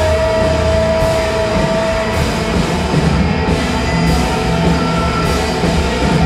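Live rock band with a large brass and reed section of saxophones, trumpets, trombones and clarinets, playing loudly together over drums and bass. One high note is held through the first two seconds.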